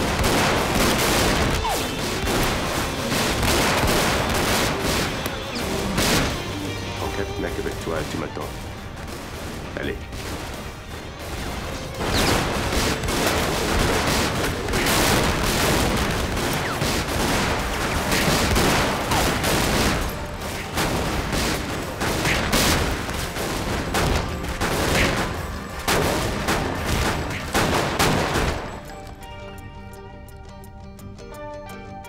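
A prolonged gunfight: rapid, overlapping pistol shots almost without pause, thinning for a few seconds about eight seconds in and again about twenty seconds in, and stopping just before the end.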